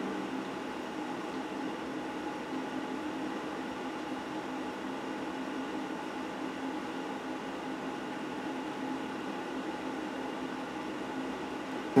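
Steady background hiss with a faint, even hum, and no guitar notes.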